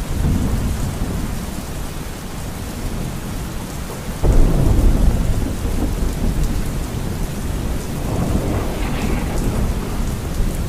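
Steady heavy rain with thunder rumbling; a sudden loud thunderclap about four seconds in rolls on for several seconds, and another rumble swells near the end.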